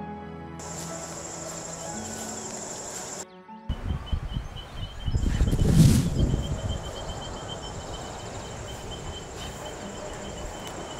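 Crickets and other insects trilling steadily, one high even trill with a pulsed chirping joining about halfway. Soft music plays under them for the first three seconds, and a loud rushing noise swells and fades just before the middle.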